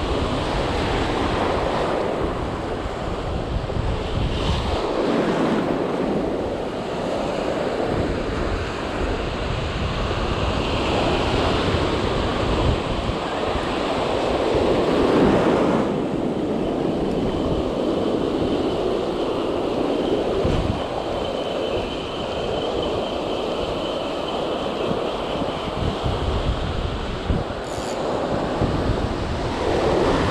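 Ocean surf breaking and washing up a sandy beach, rising in surges, with wind buffeting the microphone.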